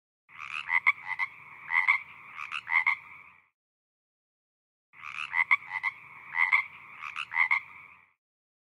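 Frog calls: a short run of several calls, played twice with a silent gap of about a second and a half between.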